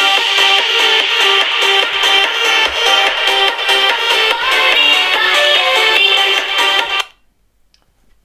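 Music played loud through a Nokia 6234 mobile phone's built-in loudspeakers, with no deep bass. It cuts off abruptly about seven seconds in.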